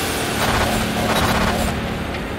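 Sound-design effect accompanying an animated logo: a loud, dense rush of noise with a low rumble beneath, swelling about half a second in.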